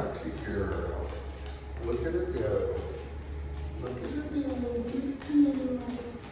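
A man's voice, wordless and gliding in pitch, over regular taps of footsteps and a dog's claws on a hard floor.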